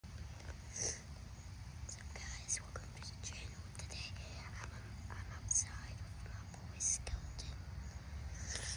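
A young boy whispering close to the phone's microphone: breathy, hissing syllables with little voice in them, over a steady low rumble.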